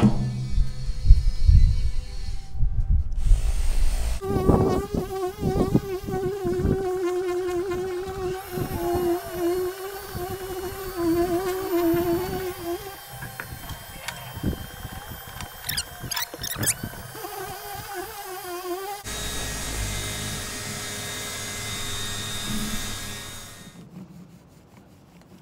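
Cordless orbital polisher running on a fibreglass boat hull, buffing with cut-and-polish compound: a steady motor whine that wavers as the pad is pressed and moved. It starts about four seconds in, after a low rumble.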